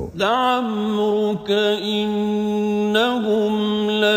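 A man chanting Quranic Arabic in melodic tajweed recitation, drawing out long held notes with slight turns in pitch, broken by short pauses between phrases.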